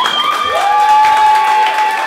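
Audience applauding and cheering at the end of a song: a dense patter of clapping with voices rising above it.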